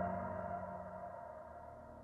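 Ambient transition music: a held chord of ringing tones, fading away steadily, the higher notes dying first.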